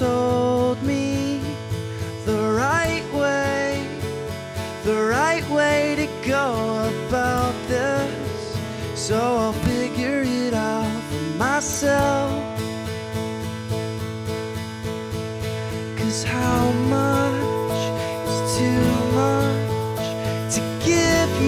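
Live acoustic band music: acoustic guitars strummed, with a man singing lead in phrases over them.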